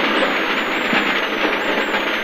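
Rally car engine and road noise heard from inside the cabin at stage speed: loud and steady, with a faint high whine that wavers in pitch.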